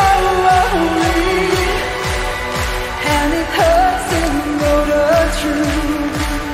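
Symphonic metal band and string orchestra playing live: a steady kick-drum beat under sustained strings and a sung, gliding melody line.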